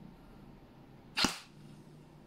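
A single semi-auto shot from a G&G ARP9 2.0 airsoft electric gun fitted with a smoke-effect suppressor: one sharp crack about a second in.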